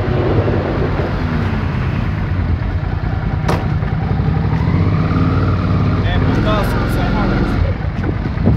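Mini Cooper S engine running steadily as the car moves off, with voices talking over it and a single sharp click about three and a half seconds in.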